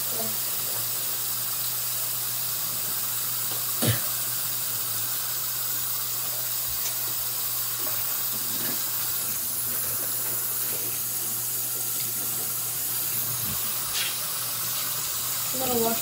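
Bathroom sink tap running steadily, an even hiss of water, with a sharp knock about four seconds in and a softer click near the end.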